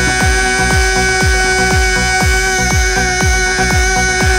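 Amplified dabke dance music: one sustained electronic note held steady over a driving beat of deep kick drums, about two a second.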